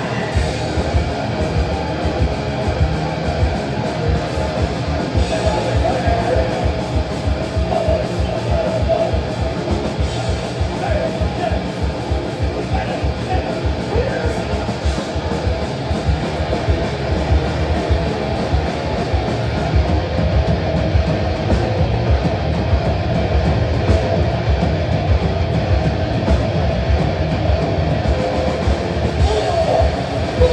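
A metal band playing live at full volume: distorted electric guitars and bass over fast, steady drumming.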